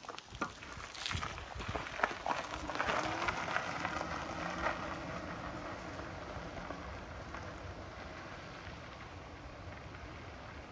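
Fat e-bike tyres crunching over a gravel driveway as the bike pulls away, fading steadily as it rides off. A few sharp clicks and knocks in the first two seconds as the rider gets on.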